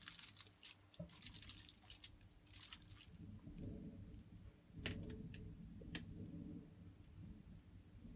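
Faint rustling and scattered light clicks of a whole fish being handled and pressed closed on crinkly aluminium foil, with two sharper clicks about five and six seconds in.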